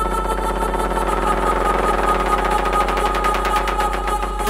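Melodic techno breakdown: sustained synth chords over a steady low bass drone, with a fast buzzing pulse and no kick drum.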